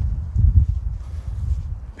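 Footsteps on dirt ground, heard as uneven low thuds, mixed with wind rumbling on the microphone of a handheld camera being carried.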